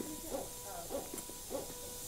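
Surgical simulator's patient monitor beeping faintly with the simulated heart rate, short low tones about three a second, over a faint steady electronic tone.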